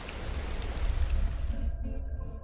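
Steady rain with a deep thunder rumble, a sound-effect bed that cuts off near the end and leaves a few held music tones.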